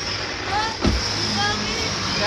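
Indistinct voices over a steady low hum, with a single thump a little under a second in.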